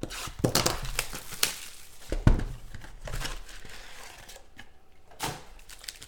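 Plastic wrapping torn off a sealed Panini Contenders Football card box and crumpled: irregular crinkling and tearing in bursts, with a single thump a little after two seconds in.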